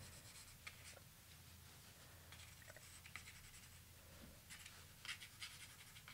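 Faint scratchy strokes of a pencil drawing on a paper card, coming in short irregular bursts, busiest near the end, over a faint steady low hum.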